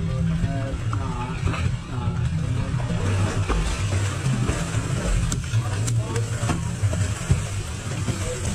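Twin outboard engines running with a steady low rumble, while water splashes and slaps at the stern as a hooked shark thrashes beside the boat, with a few sharp splashes or knocks in the second half.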